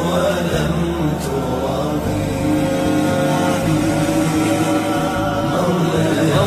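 Arabic Islamic nasheed: voices chanting long held, wavering notes over a steady low drone, with no clear words.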